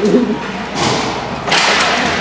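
Ice hockey faceoff: sticks clacking and skates scraping on the ice, with a sharp, louder scrape about one and a half seconds in, against echoing rink ambience and voices.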